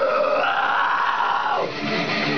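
A young male vocalist's harsh metalcore scream, held for about a second and a half and then breaking off near the end, over the song's backing music.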